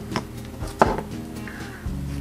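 Soft background music with a few light taps and clicks from small objects being handled; the clearest tap comes about a second in.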